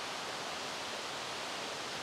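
Steady, even rushing noise of woodland ambience, with no distinct sounds standing out.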